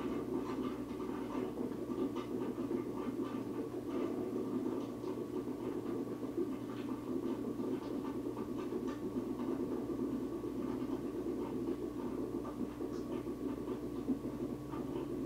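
A steady mechanical hum with several fixed tones, with many faint, short ticks and scratches scattered over it.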